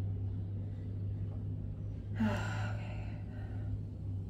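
Electric pottery wheel running with a steady low hum as a pot is trimmed. About two seconds in, a woman gives a short voiced sigh.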